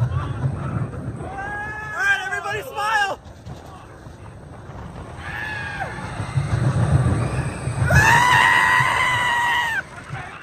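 Riders on a roller coaster screaming and whooping over the train's low rumble, with one long held scream of about two seconds near the end.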